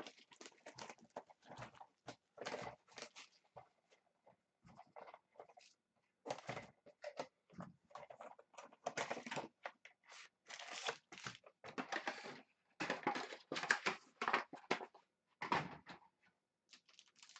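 Irregular rustling and crinkling of packaging as a trading card box is unwrapped and opened by hand and its packs are handled, loudest in the second half.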